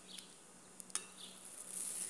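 Faint clicks of a metal fork against a glass bowl as a soaked piece of cake is lifted out of the syrup: two small clicks, about a tenth of a second in and just under a second in, over a faint steady hum.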